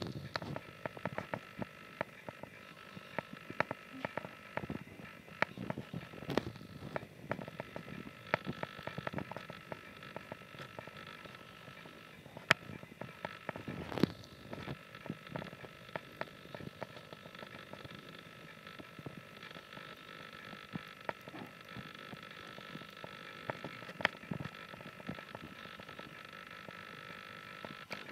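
A baby hedgehog eating from a saucer, its lapping and chewing making faint, irregular wet clicks and smacks. Under them runs a faint, steady high hum.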